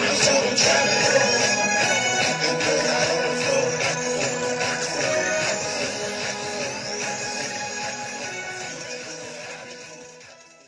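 Instrumental outro of a hip-hop track, the beat playing on without vocals and fading out steadily toward the end.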